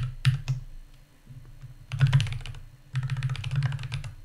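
Typing on a computer keyboard: a few separate keystrokes at the start, then two quick runs of rapid keystrokes in the second half.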